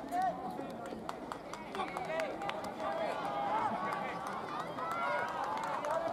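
Young baseball players' voices shouting and calling across the field, several at once and overlapping, with scattered sharp clicks.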